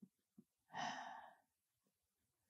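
A woman's single short sigh or breath about a second in, otherwise near silence.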